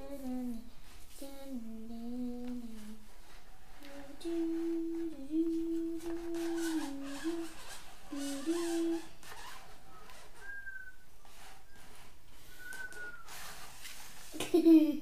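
A child humming a wandering tune in held notes for the first nine seconds or so, with light clicks and taps from the toy sweeper being handled underneath and after it.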